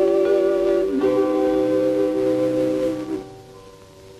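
Female vocal trio holding a long final chord over banduras, with a step down in pitch about a second in. The chord dies away about three seconds in.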